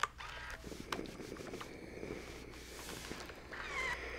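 Household iron pressing and sliding over a quilted fabric seam on a pressing mat: soft rustling and sliding, with a sharp click at the start and another about a second in.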